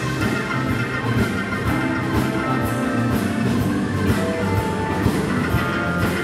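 Live band playing loud: several electric guitars over bass, keyboards and drums, with a steady drum beat and cymbal strokes running through.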